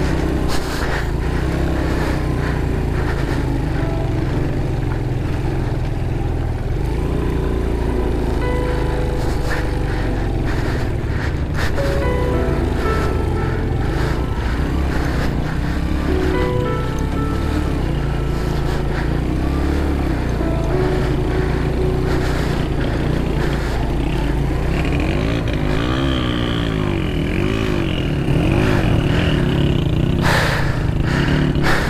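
Motorcycle engine pulling under load up a steep, rocky dirt track, its note changing with the throttle, with background music playing over it.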